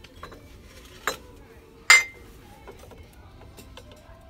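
Glass figurines clinking on a glass shelf as they are handled: a light knock about a second in, then a louder, ringing clink about two seconds in.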